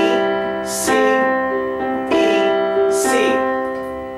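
Casio Privia digital piano playing a slow phrase of C-major notes and chords, about one strike a second, held with the sustain pedal. The C and the E are hit harder as accents. The last chord rings out and fades.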